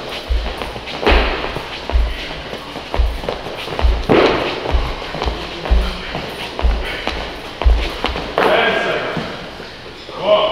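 Background music with a steady deep beat about once a second, with voices and a few thuds and bangs from people exercising in a large room.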